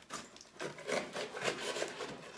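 Small cardboard box being opened by hand: cardboard flaps rubbing, scraping and tearing in a series of uneven bursts.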